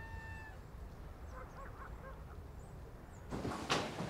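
Rural outdoor ambience: the held tail of a rooster's crow fades out in the first half-second, followed by faint, scattered distant animal calls over a low hum. From about three seconds in, a run of loud scraping, clattering noises begins.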